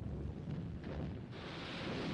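A steady rushing noise with a low rumble beneath it, turning hissier about two thirds of the way through.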